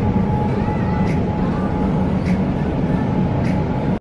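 Steady whirring hum of supermarket refrigerated display cases, with a faint constant whine running through it.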